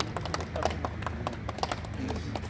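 A small group of people clapping, the separate hand claps irregular and close together.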